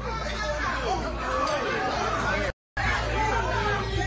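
Several people's voices talking over one another, with a steady low hum underneath. The sound cuts out completely for a moment about two and a half seconds in, then the voices resume.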